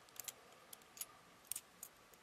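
About half a dozen faint, scattered clicks as the small plastic and metal parts of a CM's EX Gokin Dark Cyclone figure are turned by hand during its transformation.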